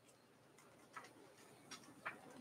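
Near silence: room tone with a few faint short ticks, about a second in and again near the end.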